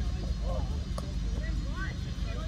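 A cricket bat strikes the ball once, a single sharp knock about a second in, off a delivery that is played for a single. Faint calls from players on the field come around it, over a low steady rumble.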